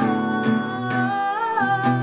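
Acoustic guitar strummed in a steady rhythm, about two strokes a second, under a woman's voice holding a long note that bends up briefly near the middle.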